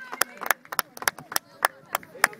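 One person clapping close to the microphone: quick, uneven claps, about six a second.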